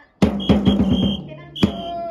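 Music with loud drum strikes, several in quick succession, then another near the end. A shrill high tone sounds on and off over them.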